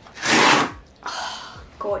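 A brown kraft-paper mailer being torn open by hand: one loud rip lasting about half a second, then softer paper rustling.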